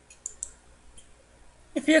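A few faint clicks of a computer mouse in the first second, then a woman starts speaking near the end.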